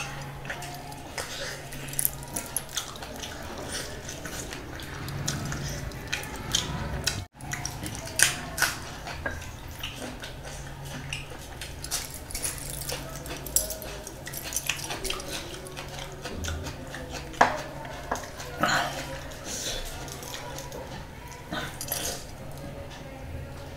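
Close-miked eating sounds: wet chewing, lip smacks and many small sharp clicks from a mouth eating fried fish and biryani by hand, over a low steady hum. The sound drops out briefly about seven seconds in.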